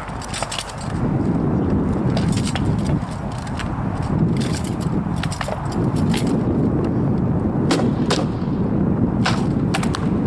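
Distant rattan swords striking shields and armor during SCA heavy armored sparring: irregular sharp cracks, a dozen or so, over a steady low rumble.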